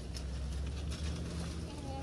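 A steady low hum with faint, light rustles and ticks, in a lull between voices.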